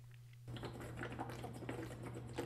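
A low steady hum for about half a second, then a fast, irregular run of faint clicks and ticks.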